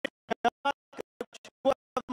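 Choppy, glitching audio: a man's voice chopped into very short fragments, about five a second, with dead silence between them. The breaks point to a fault in the transmission.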